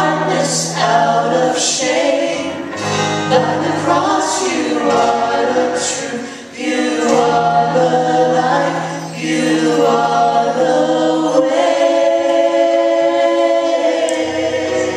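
Small mixed group of male and female voices singing a worship song in harmony through microphones, over sustained low accompaniment. Near the end they hold a long final chord.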